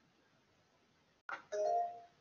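Near silence, then about one and a half seconds in a short click followed by a brief two-note electronic notification chime.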